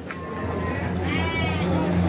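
A sheep bleating once about a second in: a single call that rises and then falls in pitch.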